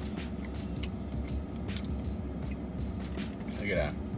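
Chewing and mouth sounds of someone eating a soft pretzel with cheese sauce, over a steady low hum in a car cabin. A short hummed "mm" comes near the end.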